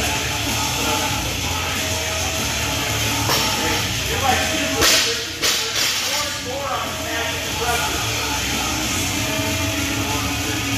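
Background gym music playing steadily. About five seconds in, a loaded barbell with rubber bumper plates is dropped to the floor, landing with a crash and a second, smaller impact about half a second later as it bounces.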